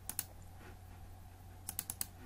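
Sharp computer clicks while navigating a file manager: a quick pair just after the start, then a rapid run of about four near the end, over a faint steady hum.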